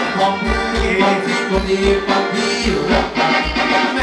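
Live band playing upbeat Thai ramwong dance music through a PA system, with a steady bass beat about twice a second under the melody.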